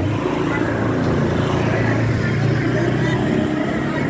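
Street traffic: a motor vehicle's engine running close by with a steady low hum.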